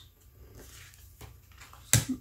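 A tarot card set down on the wooden tabletop, one sharp tap near the end over quiet room tone.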